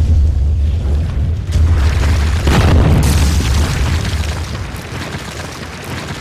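Cinematic intro sound effect: a deep rumbling boom with crumbling rock and debris, a heavier crash about two and a half seconds in, then slowly fading away.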